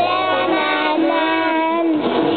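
A group of young children singing a song together in unison, holding each note before moving to the next.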